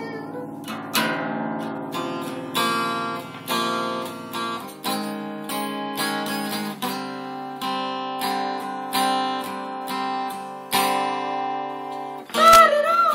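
Acoustic guitar strummed without singing, a chord about once a second, each left to ring out before the next.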